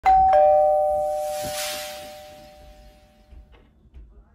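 A two-note ding-dong chime: a higher note struck at the start, then a lower one about a quarter second later, both ringing out and fading away over about three seconds. A soft hiss swells up and dies away about a second and a half in.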